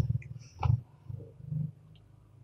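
Three short, low, quiet hums or grunts from a person's voice, spread across about two seconds.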